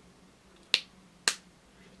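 Two sharp plastic clicks about half a second apart as the snap-on cap of a felt-tip eyeliner pen is pulled off.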